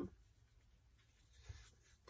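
Near silence with faint rustling of a paper sticker sheet being handled, and one soft tap about one and a half seconds in.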